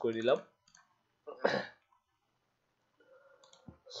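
A few faint computer mouse clicks during screen work, between brief bits of speech, with a short breathy sound about a second and a half in.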